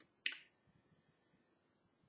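A single short, sharp click about a quarter second in, followed by near silence.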